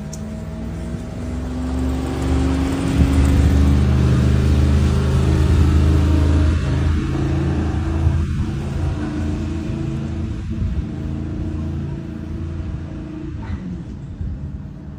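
Mercedes-AMG G63 twin-turbo V8 engine driving past under power and then pulling away, loudest in the middle and fading toward the end.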